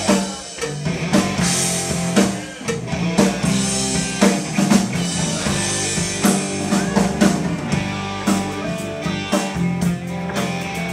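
Live classic rock band playing: electric guitar, bass guitar and a drum kit keeping a steady beat.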